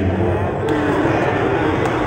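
Speech: a voice talking over loud hall sound.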